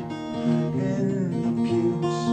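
Steel-string acoustic guitar strummed, playing chords that change every half second or so as song accompaniment.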